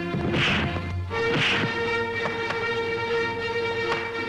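Fight-scene background music, with two dubbed punch sound effects, one about half a second in and one about a second and a half in.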